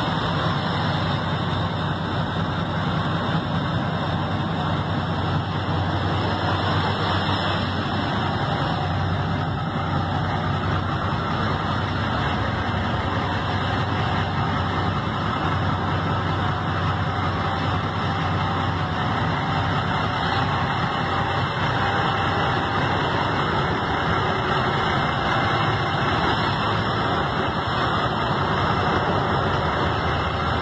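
Kenworth T800 semi tractor's diesel engine idling steadily.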